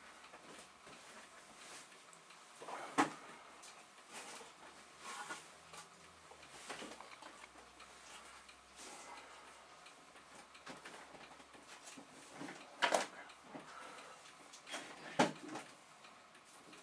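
Rummaging and handling noises: objects being shifted and set down, with a few sharp knocks about 3 seconds in, about 13 seconds in and about 15 seconds in.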